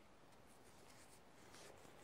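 Near silence: faint background hiss, with perhaps a trace of faint rustling.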